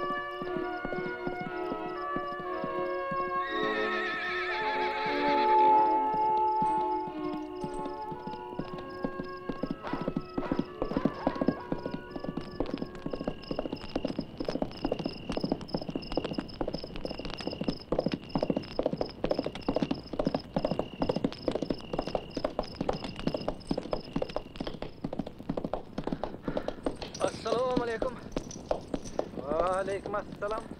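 Film score music gives way to a horse's hooves clip-clopping in a steady rhythm from about nine seconds in. Near the end a horse whinnies.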